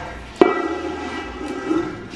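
A stainless-steel dome food cover knocks against the counter or the other cover about half a second in and rings with a steady metallic tone that fades slowly over the next second and a half.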